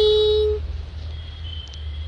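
A young woman's sung note, held steady, ending about half a second in, followed by a pause between phrases with a low rumble and a faint thin high tone.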